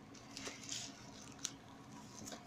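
Hands handling a bubble-wrapped package inside a cardboard shipping box: faint crinkling and rustling of plastic wrap and cardboard, with one sharp click about one and a half seconds in.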